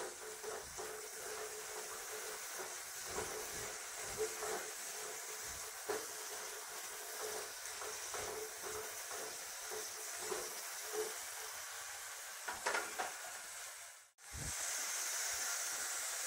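Shallots and garlic cloves sizzling in hot oil in a nonstick pot, stirred with a spatula that scrapes and knocks lightly against the pot now and then. About two seconds before the end the sound cuts out for a moment, then the sizzle comes back brighter.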